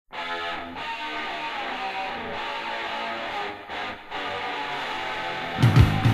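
Opening of a mid-1980s rock song: an electric guitar plays alone, then the full band with drums comes in loudly just before the end.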